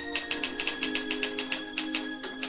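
Typewriter key clicks as a sound effect, a rapid steady run of about six or seven a second, over soft sustained background music.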